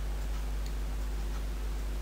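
A few faint clicks over a steady low hum.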